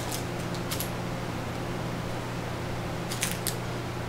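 A few light clicks and plastic rustles as small crankbait lures in clear plastic bags are handled: one click just before a second in and a quick cluster about three seconds in, over a steady low hum.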